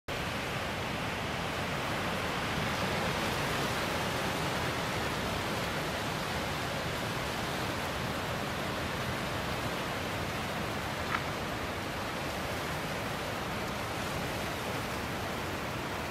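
Steady outdoor hiss with no distinct pitch or rhythm, and one faint click about eleven seconds in.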